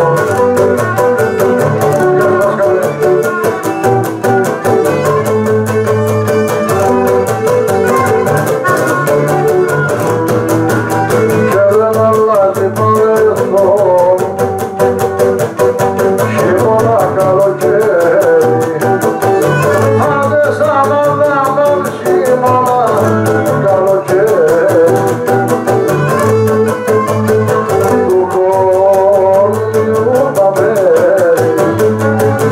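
Cretan lyra and laouto playing a syrtos dance tune. The bowed lyra carries a wavering melody over the laouto's plucked chords and bass, at a steady, even loudness.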